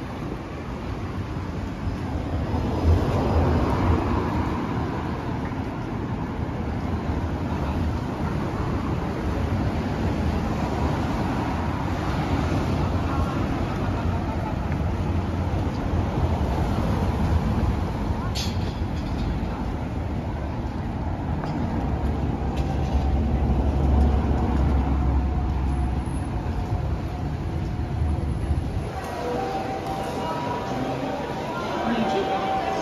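Road traffic on a city street: cars passing one after another, engine and tyre noise swelling and fading as each goes by, with one sharp click about two thirds of the way through. Near the end it gives way to the murmur of a busy railway station concourse.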